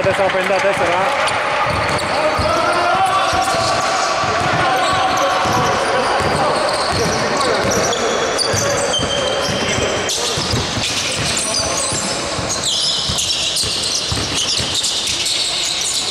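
Sounds of a basketball game on a hardwood court: a ball bouncing, short squeaks, and players' voices, continuing steadily.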